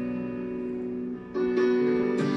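Guitar accompaniment: held chords ringing and fading slightly, then a new chord struck partway through.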